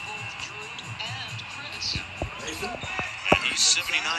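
A basketball bouncing on a hardwood court floor: two thuds close together about halfway through, and a louder one about three seconds in.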